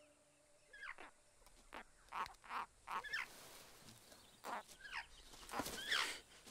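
Bird chicks in a nest squeaking: a string of short, high calls, several sliding down in pitch, the loudest ones near the end.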